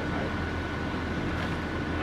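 Steady outdoor background noise: a constant low hum with a faint, steady high-pitched whine above it.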